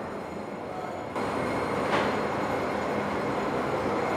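Dairy processing plant machinery running with a steady, even noise that comes in about a second in, after a quieter stretch of room tone. A faint knock sounds about two seconds in.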